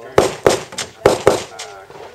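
Four pistol shots, fired as two quick pairs: two shots about a third of a second apart, then two more about half a second later, each with a short echo.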